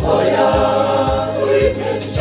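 A church choir singing a gospel hymn in harmony, with a low beat thudding two or three times a second underneath.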